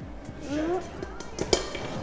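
Faint talk in the background, with light kitchen knocks; the sharpest knock comes about one and a half seconds in.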